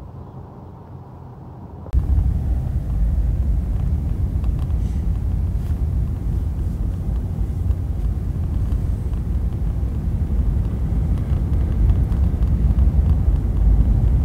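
Steady low rumble of road and engine noise inside a moving car's cabin, starting abruptly about two seconds in after a quieter low hum.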